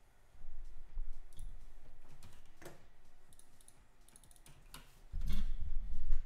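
Computer keyboard typing and mouse clicks, irregular, with heavier low thuds about half a second in and again near the end.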